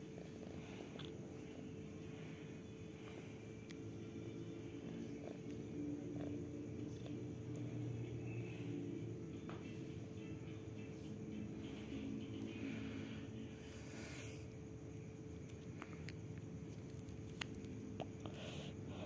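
Domestic cat purring steadily while its belly is stroked, a low continuous rumble that swells a little in the middle, with a few faint clicks near the end.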